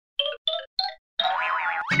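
Animated logo jingle: four short notes stepping up in pitch, then a held cartoon-style flourish with tones sliding up and down.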